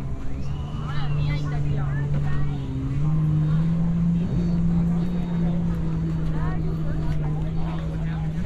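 A motor's low, steady drone that steps up slightly in pitch about three seconds in and then holds, with people's voices nearby.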